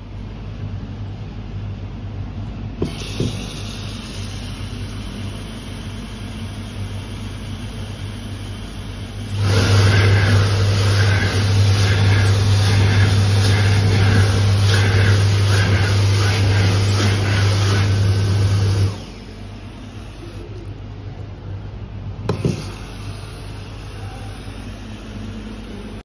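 Water running from a chrome washbasin tap into a stone sink: a loud, steady gush for about nine seconds that cuts off abruptly, over a steady low hum. A softer rush fills the rest, with a click a few seconds in and another near the end.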